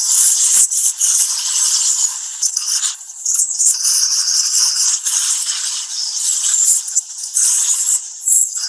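VersaJet hydrosurgical system's high-pressure water jet hissing as the handpiece sprays over a horse's wound, blasting away dead tissue and contamination. The noise is loud and uneven, dipping briefly now and then.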